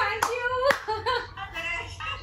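Hands clapping: a few separate, sharp claps in the first second.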